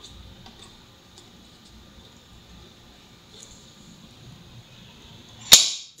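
A few faint ticks of fingers pressing a membrane keypad, then one sharp, loud clack about five and a half seconds in as the solenoid lock pulls in and unlocks on the correct password.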